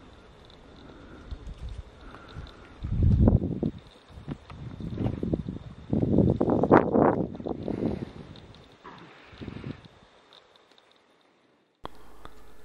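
Wind gusting across the microphone in several irregular bursts, strongest from about three to eight seconds in, then dropping away to near silence shortly before the end.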